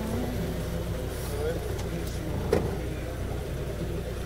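Car engine running with a steady low hum, a single sharp click about two and a half seconds in.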